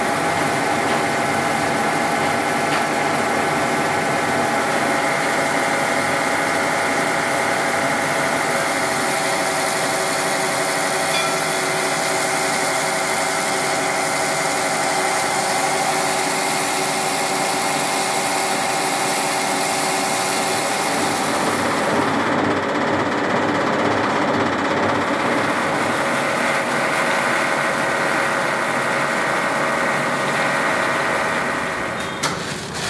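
Recycling plant machinery running steadily, a continuous mechanical drone with several constant hum tones. The high hiss drops away briefly about three quarters of the way through.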